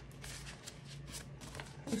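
Soft rustling of paper being handled by hand on a desk, with a few light brushes and scrapes.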